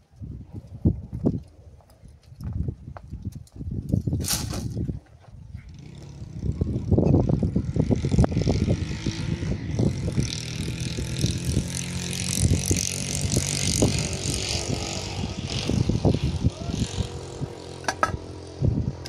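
Scattered knocks and rustles at first. From about six seconds in, a motor runs steadily under a hiss.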